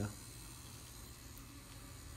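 Faint, steady low hum of an Axys rotary tattoo machine running during a permanent eyeliner procedure, over quiet room noise.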